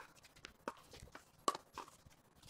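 Paddles striking a plastic pickleball during a rally: sharp pops, the loudest right at the start and about a second and a half in, with fainter hits between.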